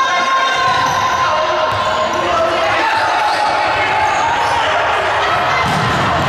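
Futsal game sounds echoing in an indoor sports hall: the ball being kicked and bouncing on the wooden court, under steady shouting from players and spectators.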